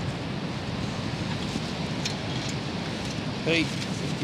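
Steady wind rushing and buffeting over the microphone on an open, windy beach. A short spoken word cuts in near the end.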